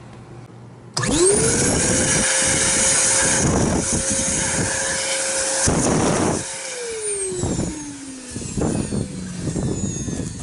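Hoover Constellation canister vacuum switched on about a second in: the motor spins up quickly to a steady whine with rushing air and runs for about five seconds. It is then switched off and winds down with a steadily falling pitch, with several knocks as it coasts down.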